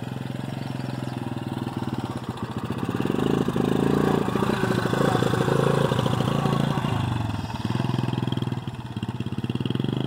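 Small four-wheeler (ATV) engine running as it is ridden across grass, louder as it passes close by in the middle and then easing off as it moves away.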